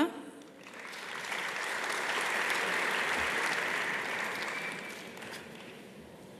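Audience applauding, swelling about a second in and dying away near the end.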